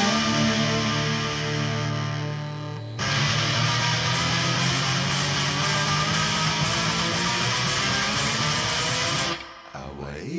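Indie rock band playing an instrumental passage led by electric guitars. A held chord fades for the first three seconds, then the full band comes back in loud about three seconds in and plays on until it drops away suddenly shortly before the end.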